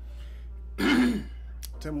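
A man clears his throat once, a short loud rasp about a second in, then starts to speak near the end.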